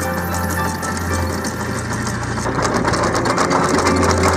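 Anchor chain running out through the windlass and over the stainless steel bow roller, a fast metallic rattle that grows louder in the second half, over soft background music.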